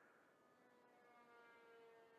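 Faint, high whine of the Honker Bipe 250 RC biplane's motor and propeller in flight, its pitch sliding slightly lower.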